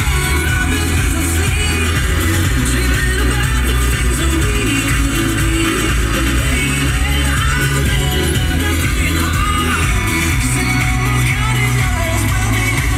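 Pop song with a sung vocal and a heavy bass line playing on a car radio inside the car.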